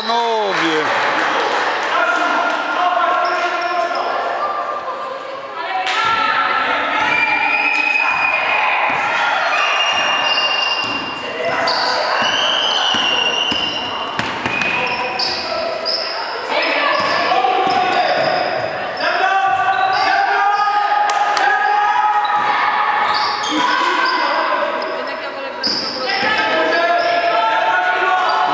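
Basketball bouncing on a wooden gym floor during play, with players' and spectators' voices calling out, echoing in a large sports hall.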